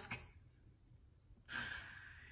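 A woman's audible breath, a hissing draw of air about a second and a half in that lasts about a second, after a brief quiet pause.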